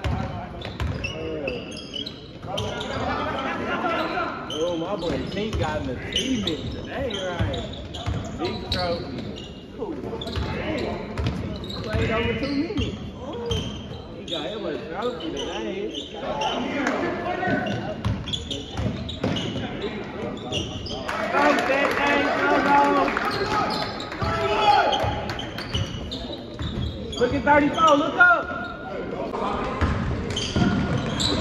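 Basketball bouncing on a hardwood gym floor amid players' and spectators' voices, all echoing in a large gymnasium.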